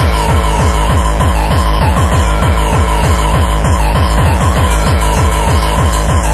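Hard techno from a DJ set: a fast, steady kick drum beat under a sustained synth note.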